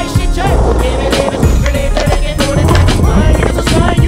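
Skateboard wheels rolling on concrete, mixed under loud background music.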